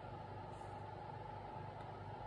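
Faint steady background hum of room tone, with no distinct handling sounds.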